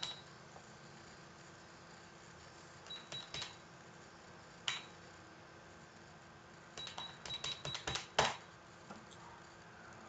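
Computer keyboard and mouse clicks over quiet room tone: three quick clicks about three seconds in, a single sharper one near five seconds, then a fast run of about ten clicks around seven to eight seconds in, the last of them the loudest.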